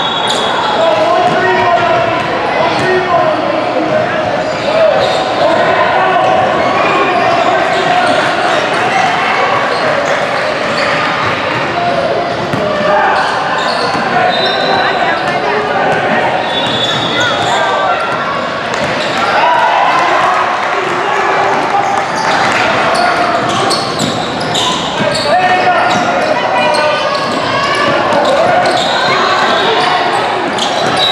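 Basketball bouncing on a hardwood gym floor during play, with voices of players, coaches and spectators going on throughout, echoing in a large hall.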